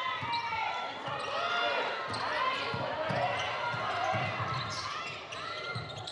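Game sounds on a hardwood basketball court: a ball being dribbled, with many short sneaker squeaks as players cut and change direction, in a large, empty arena.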